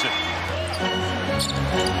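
Music with a steady deep bass and sustained held tones, coming in at the start.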